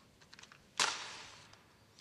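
A few small handling clicks, then a match struck on its box: a sudden scratch flaring into a hiss that dies away over about a second as it catches.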